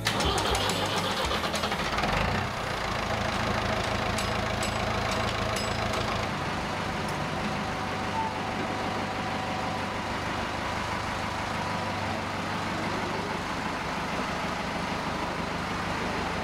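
Ford 5000 tractor's three-cylinder diesel engine running steadily, a little louder for the first couple of seconds.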